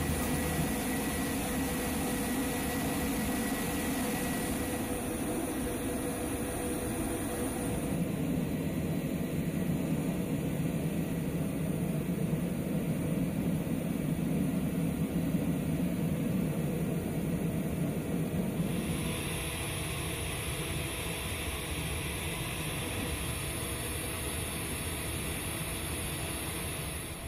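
Steady engine and machinery noise of an aircraft flight line, with a constant hiss. The tone shifts about three-quarters of the way through.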